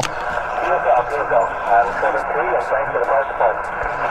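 Amateur HF transceiver speaker receiving a weak voice on single sideband, the words faint under steady band static and thin and tinny, with nothing above a narrow voice band.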